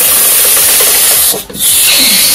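A heated steel knife blade sizzles as it is pressed and drawn through a block of ice, melting it. It makes a loud, steady hiss that breaks off briefly about one and a half seconds in, then resumes.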